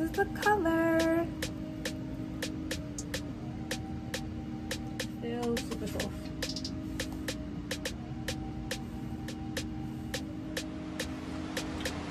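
Soft background music: held low notes under a steady ticking beat, with a brief voice-like note about half a second in.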